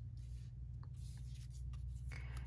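Faint rustle and light ticks of tarot cards sliding on a tabletop as one card is laid down and the next drawn from the deck, over a low steady hum.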